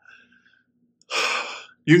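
A man draws a short, audible breath through his mouth about a second in, during a pause in his talk, and starts speaking again just after.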